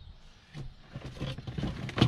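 Gear being handled in a plastic kayak tackle pod: irregular small knocks, clicks and rustling, starting about half a second in.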